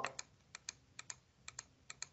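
Faint clicks of a down-arrow key tapped about five times in a row, each press a quick double click of press and release, stepping down a calculator table.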